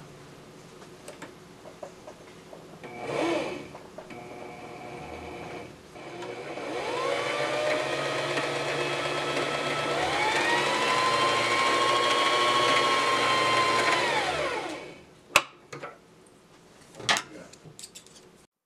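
Singer sewing machine motor spinning fast to wind a bobbin: a steady whine that rises as it speeds up, steps higher partway through, holds, then winds down. A brief burst comes earlier, and a couple of sharp clicks come near the end.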